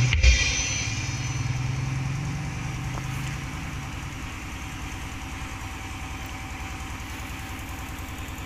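Motorcycle engine running past and fading away over the first few seconds, with a steady low engine hum continuing underneath. A last beat of drum music through the speaker stack cuts off just after the start.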